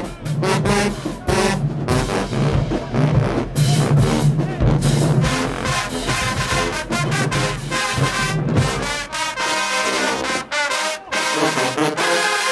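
Marching band playing: brass with sousaphones and trombones over heavy, driving drum hits, then about nine seconds in the drums drop out and the brass holds sustained chords.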